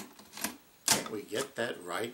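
An elderly man's voice speaking a few words, starting about a second in, after some short clicks.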